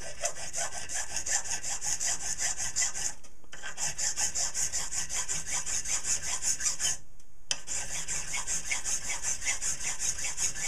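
Hand file rasping across a small piece of brass held in a vise, in quick, even, repeated strokes. The filing stops briefly twice, about three seconds in and again about seven seconds in.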